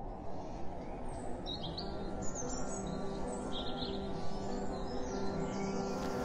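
Small birds chirping over a low, steady outdoor rumble, with soft held music tones coming in about two seconds in.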